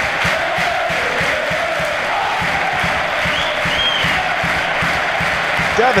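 Football stadium crowd cheering and chanting in celebration of a home goal, with a steady low beat underneath.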